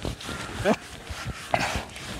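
A single short rising call, a dog's bark, about two-thirds of a second in, with a cloth duster rubbing across a blackboard.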